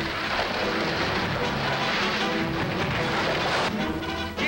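Horse team galloping and pulling a wagon: a dense, steady clatter of hooves and wheels, over a music score. It cuts off abruptly near the end.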